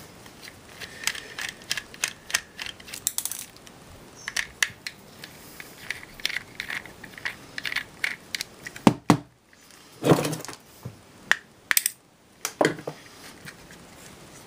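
Small screwdriver working the tiny casing screws out of a Flip Ultra camcorder: a run of light clicks and scrapes of metal on metal and plastic, with a few louder knocks and clatters between about nine and thirteen seconds in.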